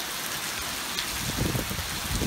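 Heavy rain pouring down steadily, a dense even hiss, with some low rumbling in the second half.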